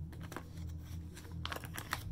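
Plastic zip-top bag being handled in the hands: light crinkling and a run of small clicks, thickest near the end.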